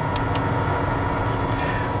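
Steady drone of an aircraft engine running, with a constant hum over it.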